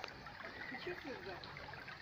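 Faint ambience beside an outdoor swimming pool: a low trickle of pool water, with faint distant voices.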